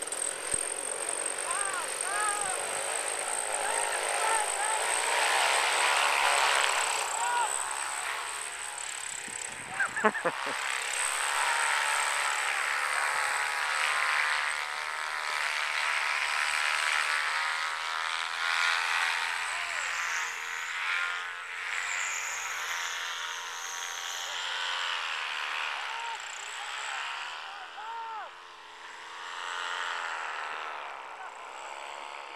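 Solo 210 single-cylinder two-stroke paramotor engine running under throttle for a take-off, its pitch rising and falling, with a sharp loud knock about ten seconds in.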